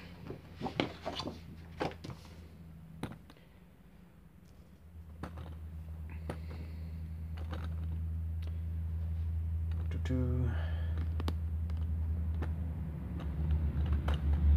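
Desk items and drawing paper being moved and set down: a few quick clicks and knocks in the first three seconds, then a low steady rumble that grows louder from about five seconds in.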